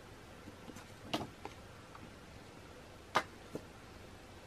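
Stiff photo prints being shuffled by hand, giving a few short paper snaps and taps: a louder one about a second in and another near three seconds, each followed by a softer one.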